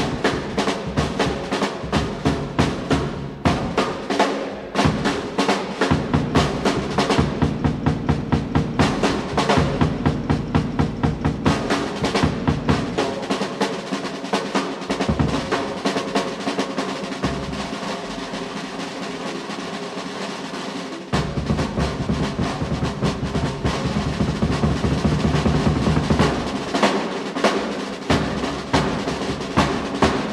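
Jazz drum solo on a full drum kit: fast, dense stick strokes on snare and tom-toms over the bass drum. About twelve seconds in it eases into a lighter, quieter stretch without the bass drum, and about twenty-one seconds in the bass drum comes back in suddenly under busy strokes.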